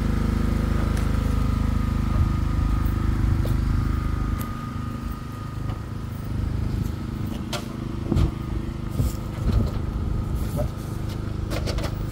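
An engine running steadily with a low hum. The deepest part of the hum drops in level about four seconds in, and a few light knocks sound over it later on.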